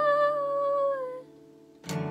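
A woman's voice holds one long note, sliding slightly lower and fading out about a second in, over a softly ringing acoustic guitar. After a brief lull, the guitar is strummed again near the end.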